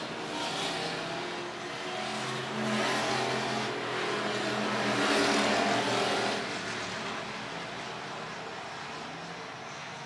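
Hobby stock race cars' engines running hard around a dirt oval, heard from the grandstand. The sound swells as cars pass and falls off over the last few seconds.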